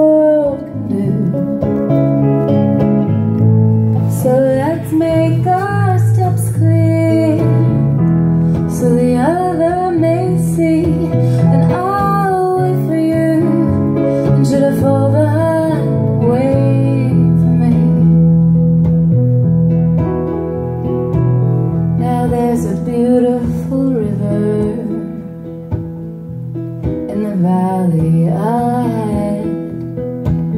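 A woman singing a slow ballad into a microphone with acoustic guitar accompaniment, in long wavering phrases over sustained chords. The music drops softer briefly near the end.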